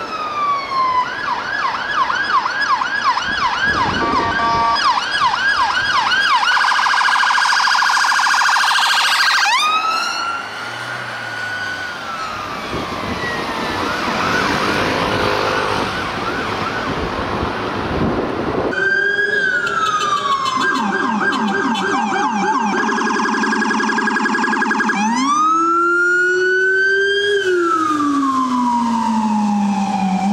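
Electronic emergency sirens: first a police car's siren falls in a wail, then switches to a fast yelp for several seconds. It gives way to a stretch of traffic noise with the siren faint. Then an ambulance siren cuts in with a falling wail, a fast yelp, then a wail rising and falling again.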